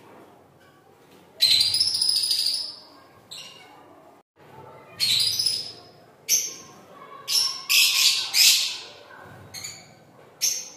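Lovebirds squawking in harsh bursts: one long call about a second and a half in, then a run of shorter squawks from about five seconds on, loudest around eight seconds.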